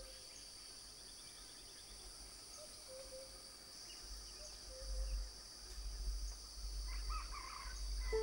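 Tropical forest ambience: a steady, high-pitched drone of insects, with a few short, faint calls and a brief burst of chirps near the end. A low rumble rises in the second half.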